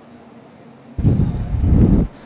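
Low rumbling noise on a handheld microphone, typical of the mic being handled or breathed on. It starts suddenly about a second in and lasts about a second, after quiet room tone.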